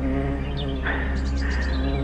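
A sustained, steady musical drone from the drama's score, with a brief high chirping sound from about a second in to near the end.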